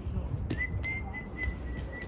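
A high, nearly level whistle that starts about half a second in and is held for about a second and a half, in a few short joined notes of almost the same pitch, with a few sharp clicks on a hard floor.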